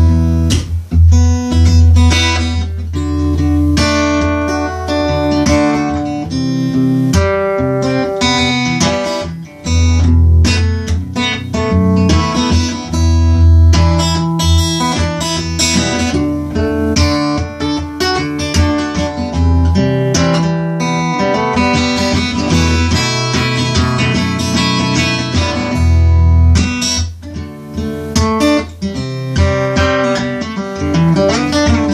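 Red Ovation acoustic guitar played fingerstyle in a slap style: a continuous groove of plucked bass and treble notes punctuated by sharp percussive slaps on the strings.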